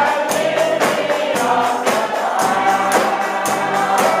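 A congregation singing a gospel song, led by a man's voice at the microphone, with a tambourine keeping a steady beat.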